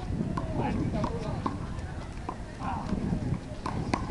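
Handball rally: a run of sharp, irregular smacks as the small rubber ball is struck by hand and rebounds off the concrete wall and court, the loudest near the end, with players' footsteps scuffing on the concrete.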